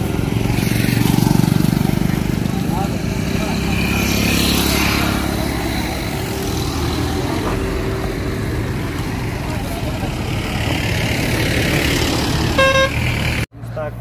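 A slow-moving jeep's engine running steadily under indistinct voices, with one short vehicle horn toot near the end, then the sound cuts off suddenly.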